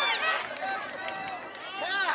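Game sound from a soccer match: several high voices shouting and calling across the field at once, easing off in the middle and picking up again near the end.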